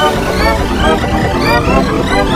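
Loud, electronically distorted audio: pitch-shifted voices layered with music, the dense warbling mix of a voice-changer effect.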